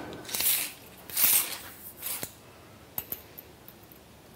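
Metal tape measure being handled and its blade pulled out: three short hissing scrapes about a second apart, then two sharp clicks about three seconds in.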